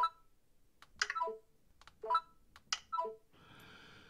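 Four short clicks, each carrying a brief electronic blip, about a second apart: a Bluetooth remote's buttons being pressed, with the iPhone's VoiceOver answering each press as the focus moves. A faint hiss follows near the end.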